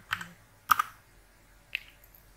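Computer keyboard keystrokes: three separate sharp key strikes, the loudest about a third of the way in.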